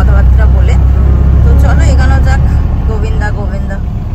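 Steady low engine and road rumble heard from inside a moving car's cabin, with voices over it.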